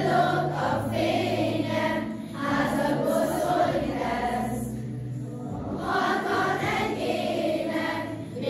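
A choir of schoolchildren singing a Christmas song together in sustained phrases, with brief pauses between phrases about two and five and a half seconds in.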